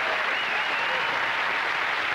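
Studio audience and panel guests applauding steadily.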